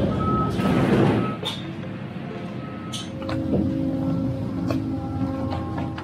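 A vehicle reversing alarm beeping in an even on-off rhythm over vehicle engine noise during the first second and a half, followed by several steady held tones at different pitches.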